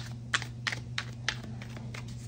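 A deck of tarot cards being shuffled by hand, the cards clicking against each other about three times a second, over a steady low hum.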